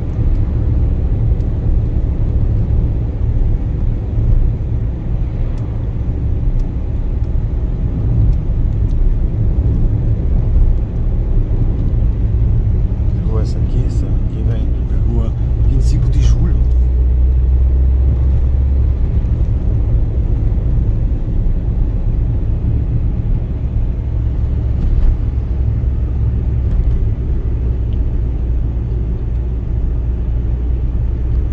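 Steady low rumble of a car driving, engine and road noise heard from inside the cabin. About halfway through there are a few seconds of sharp clicks and other brief sounds.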